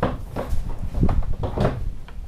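About four dull knocks and thumps in quick succession, from people moving about and sitting down on a wooden floor.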